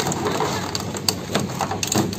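Irregular clanks and rattles of a fire-gutted Honda Vario scooter's charred frame and loose parts as it is manhandled on a pickup truck's metal bed, a string of sharp knocks.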